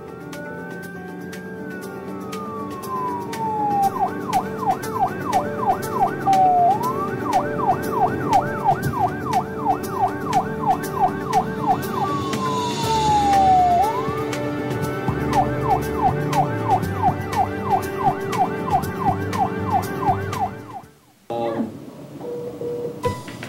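Emergency-vehicle siren switching between a slow rising-and-falling wail and a fast yelp of about two to three sweeps a second, over background music. A brief rushing noise comes midway, and the siren stops just before the end.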